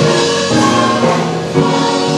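Church choir singing a gospel song, in held chords that move to a new note about every half second.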